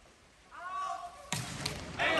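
A volleyball struck hard on the serve: one sharp smack just over a second in, ringing in the large hall, after a short burst of shouting from the crowd.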